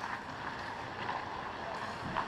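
Indoor ice hockey rink ambience: a steady hiss of the arena with faint, distant sounds of play.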